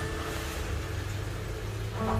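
A low steady rumble with faint held notes of soft background music over it; there are no cat calls.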